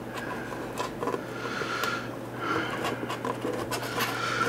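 Quiet rubbing and scraping as a cable and its plug are pushed through a hole in a plywood deck, with a few faint clicks.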